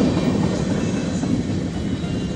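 Freight train passing over a street grade crossing as its last cars go by, a steady rolling rail noise that eases off slightly toward the end.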